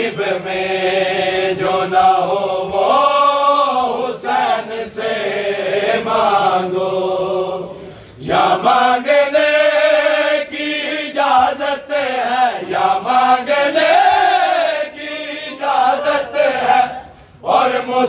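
Men's voices chanting a Shia noha, a lament for Imam Husain, in long, drawn-out melodic phrases. The chant breaks off briefly about halfway through and again near the end, with occasional sharp strikes among the voices.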